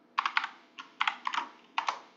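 Typing on a computer keyboard: uneven bursts of quick keystrokes, a web address being typed into a browser's address bar.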